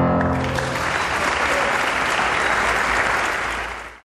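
The final chord of a piano piece rings out and dies away within the first second as an audience breaks into applause. The clapping carries on steadily and fades out near the end.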